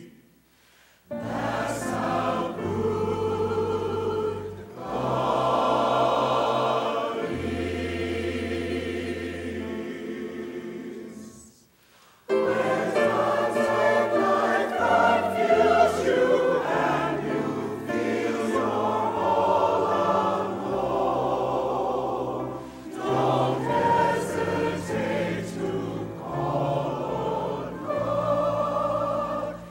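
Choir singing in several voice parts, with low sustained bass notes beneath the voices. The music stops twice, briefly just after the start and for about a second near the middle, then comes back louder.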